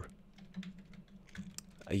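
Soft, quick, irregular clicks of typing on a computer keyboard, faint beside the voice.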